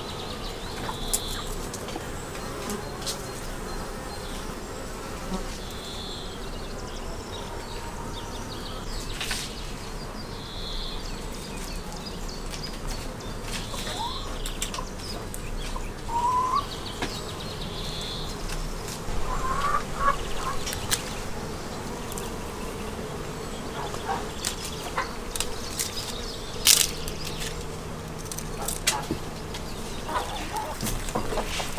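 Honeybees buzzing steadily around their hives, with scattered sharp clicks of pruning shears snipping grape bunches from the vine.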